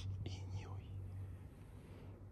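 A person whispering briefly in the first half-second, over a steady low hum.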